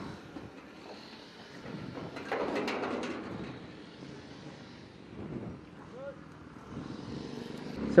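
Red metal gate being unlatched and pushed open by hand, with a faint rattle and scrape about two seconds in; otherwise low outdoor background.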